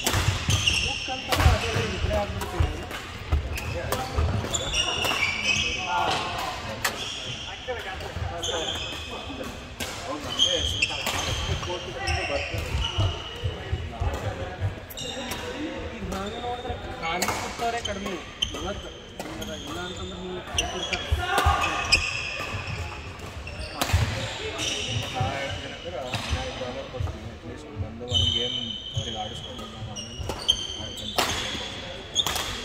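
Badminton rackets hitting shuttlecocks in rallies on several courts, many sharp cracks in quick irregular succession, mixed with court shoes squeaking briefly on the wooden floor and footfalls thudding.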